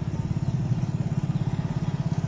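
A small commuter motorcycle's engine running steadily with a rapid, even putter, harnessed in place of a bullock to drive a wooden sesame-oil press.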